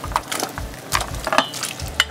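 Chunks of assorted meat scraped out of a bowl with a wooden spoon and dropped into a pot of boiling soup, with irregular knocks of the spoon against the bowl and pot.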